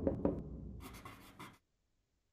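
Sound effects of an animated logo fading out: a low rumble with a few sharp ticks, then a brief scratchy hiss. The sound stops about halfway through.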